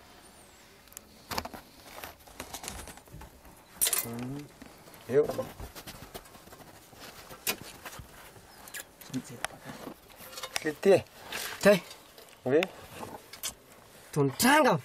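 Short, broken bursts of voices inside a mining tunnel, mixed with scattered sharp knocks and scrapes of digging tools on soft rock. The voices are loudest in the second half.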